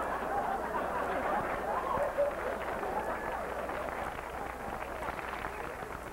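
Audience laughing and clapping after a punchline, the sound slowly dying down toward the end.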